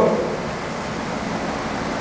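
Steady, even background hiss with no distinct events: the room and recording noise of a pause between spoken sentences.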